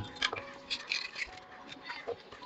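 Light clicks and taps of a matchbox and a laser pointer being handled and set down on a hard floor, over faint sustained tones.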